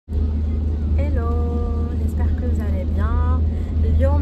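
Steady low rumble inside a car's cabin as the car drives, with a woman's voice briefly over it.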